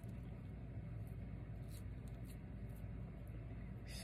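Faint rustling and soft crackles of a damp tulle lace appliqué being handled and squeezed, over a steady low hum.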